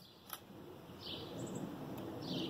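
A small bird calling outdoors: one short, high note that slides down in pitch about a second in, part of a call repeated roughly every second and a bit. Two small sharp clicks come right at the start.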